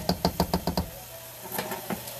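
Cookware knocking against a frying pan: a quick run of about eight knocks in under a second, then two or three more near the end.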